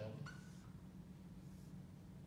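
A dry-erase marker gives a brief squeak on a whiteboard about a quarter second in, over a steady low hum in the room.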